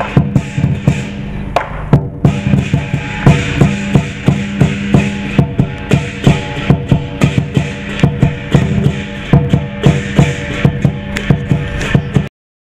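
Lion dance percussion: a large Chinese drum beaten in a quick, steady rhythm of about three beats a second, with cymbals clashing over it, and a short break about two seconds in.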